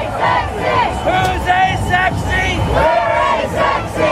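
A group of marchers shouting and cheering together, many voices overlapping in short rising and falling calls.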